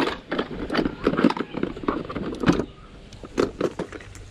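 Hand tools clinking and clattering in a tool tray as someone rummages through them for a screwdriver: a quick run of short knocks and clicks that thins out after about two and a half seconds, with a few more clicks near the end.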